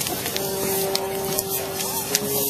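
Large bonfire burning: a steady rushing noise with sharp crackles and pops scattered through it. A steady held tone sounds underneath from about half a second in.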